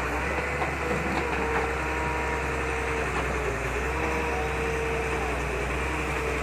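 Barge-mounted excavator's diesel engine running steadily under working load while the long-reach bucket digs mud from the riverbed, with a faint whine that wavers slightly in pitch.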